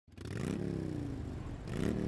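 An engine revved: its pitch climbs quickly, eases back down, then climbs again near the end.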